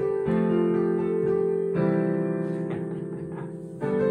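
Digital piano playing sustained chords of an improvised four-chord progression in C (G, A minor, F, C), the chord changing about every second and a half.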